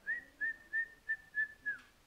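Whiteboard marker squeaking on the board in six short strokes, evenly spaced at about three a second, all at one high pitch, the last stroke sliding down: the marker hatching over a vector to cross it out.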